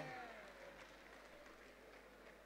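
Near silence: faint room tone, with the tail of a voice dying away right at the start.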